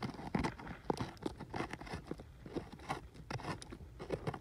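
A gloved hand scraping and raking through loose, gritty dump soil: an irregular run of short crunches and scrapes.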